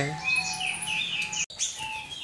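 Birds chirping in many short, high notes that fall in pitch. The sound drops out for an instant about one and a half seconds in.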